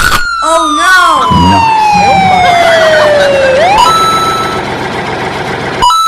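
Ambulance siren sound effect: one long wail that falls slowly over about three and a half seconds, then sweeps back up. A sharp click comes right at the start, and short voice-like sounds play over the wail in the first second or so.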